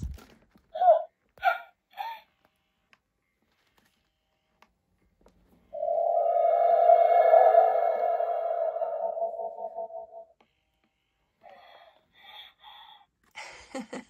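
Animatronic Baby Yoda (Grogu) toy making its electronic sounds after a pat on the head: a few short cooing chirps, then one long steady hum of about four seconds in the middle, and a few more short coos near the end.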